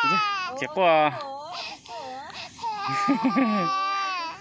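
Infant crying in long wailing cries, a long held wail near the end, with an adult voice talking over it.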